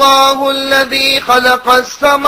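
A man chanting a Quranic verse in Arabic in melodic recitation, holding long steady notes with brief pauses for breath.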